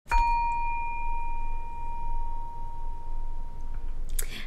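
A single struck metal chime: one clear, high ringing tone that sets in sharply and fades slowly over about four seconds.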